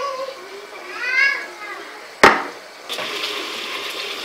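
Lamb pieces frying in hot oil in a pan: a steady sizzle sets in about three seconds in. Before it come a short high wavering call about a second in and a single sharp knock, the loudest sound, a little after two seconds.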